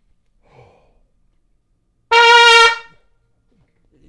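A quick breath in, then a trumpet sounds one loud, bright note about two seconds in, held a little over half a second before dying away. The note is blown with a large, fast stream of air.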